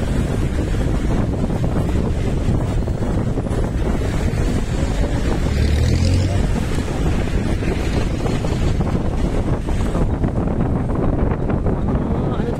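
Steady road and engine rumble from a moving vehicle, with wind buffeting the microphone.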